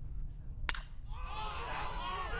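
A baseball bat strikes a pitched ball: one sharp crack about two-thirds of a second in. About a second in, the spectators break into a burst of shouting and cheering.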